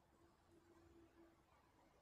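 Near silence, with a faint low hum.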